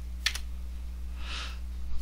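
Two quick computer-keyboard key clicks shortly after the start, the Enter key committing a typed value, over a steady low electrical hum.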